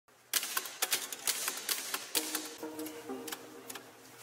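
Corona portable typewriter keys being struck in quick, irregular clacks. Music with held notes comes in a little after two seconds, under the typing.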